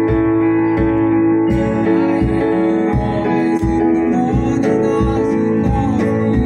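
Live band music: strummed acoustic guitar over held chords and a steady drum beat about twice a second, with a singing voice coming in about a second and a half in.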